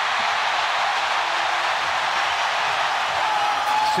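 Large stadium crowd cheering a touchdown, a steady roar.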